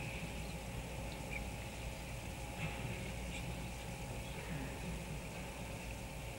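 Quiet room tone of a large mosque hall full of worshippers at silent prayer. A steady low hum and hiss from the old broadcast recording lie underneath, with a few faint scattered rustles.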